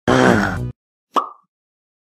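Animated intro sound effects: a short musical sting lasting under a second, then a single short pop about a second in.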